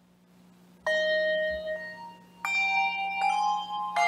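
Handbell choir opening a piece: after a brief hush, a chord of handbells is struck about a second in and rings on, then a fuller chord enters about halfway through, with more bells joining near the end.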